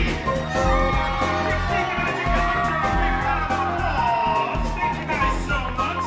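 Music playing, with an audience of children cheering and shouting over it.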